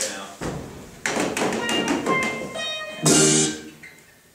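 A band's guitar, violin and drums played briefly and loosely: a knock about half a second in, then a jumble of notes from about a second in, ending in a loud short burst about three seconds in.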